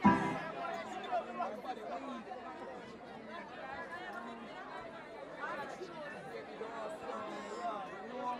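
Indistinct chatter of many voices talking over one another from a crowd and the people on stage, with a short loud voice right at the start.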